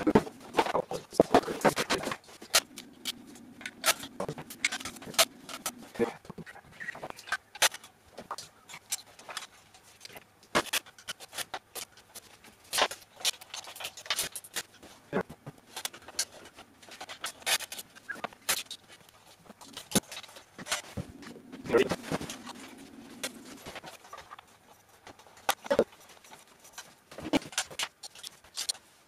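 Handling noise from patching a bass effects pedalboard: patch-cable plugs clicking into pedal jacks, with cables, plugs and pedals knocking and rattling in an irregular run of short clicks and knocks.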